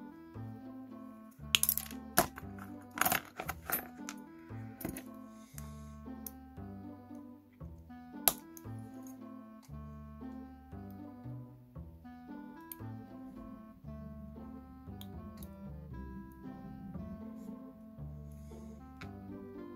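Background music, a plucked-string tune over a bass line, with sharp metallic clicks of a metal gaming miniature being trimmed with side cutters and a hobby knife. The clicks come in a cluster between about one and a half and four seconds in, with one loud click near the middle.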